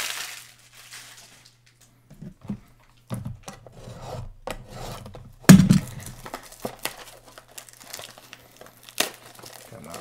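Plastic shrink wrap crinkling and tearing as it is peeled off a trading-card box, with a single thump about halfway through as the box is put down on the table.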